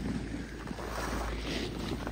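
Wind buffeting the microphone: a steady low rumble with a hiss over it.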